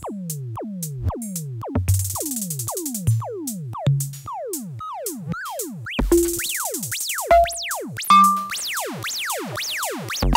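Seekbeats synthesized drum machine app playing an electronic beat: a quick run of drum hits that each sweep sharply down in pitch, with noisy hi-hat bursts every few seconds. The drum sounds shift from hit to hit as the app's randomizer reshapes them.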